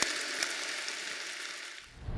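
Faint crackling hiss of hall ambience with a couple of light clicks, fading away to near quiet.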